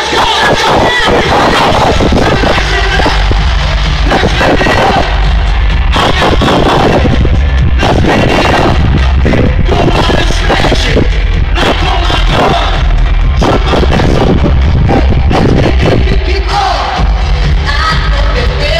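Live dance-pop music played loud through an arena sound system, with a heavy, distorted bass beat from the phone's overloaded microphone and crowd voices mixed in.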